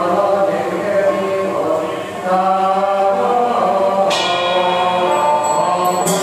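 A congregation chanting Buddhist prayers together, a slow, sustained melodic chant of many voices. About four seconds in, a ringing metallic strike joins the chant.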